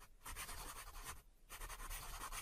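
Felt-tip marker scribbling on paper in quick scratchy strokes, quiet, with a short pause a little over a second in.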